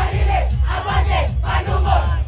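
A troupe of street dancers shouting together in rhythmic bursts over a low, pounding drum beat, with the crowd around them.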